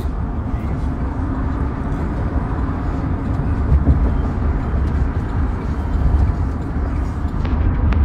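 Steady low road-and-engine rumble of a moving car, heard from inside the cabin.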